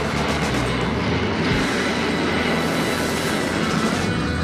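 Fighter jet engine running in afterburner on a takeoff roll, giving a loud, steady roar that drowns out background music.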